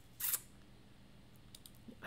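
A computer mouse clicking once, briefly, about a quarter second in; otherwise only low room tone.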